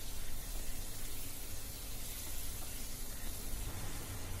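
Chicken pieces frying in oil with garlic and chili in a frying pan, giving a steady, even sizzle.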